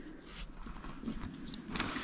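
Faint rustling of fabric being handled, with a few light clicks near the end, as small scissors are worked over the hooped embroidery.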